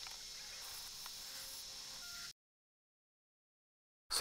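Near silence: a faint steady hiss of room tone that cuts off to dead silence a little past two seconds in.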